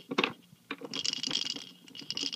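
Plastic baby toy rattling and clicking as a hand shakes and spins it, with a denser burst of rattling about a second in.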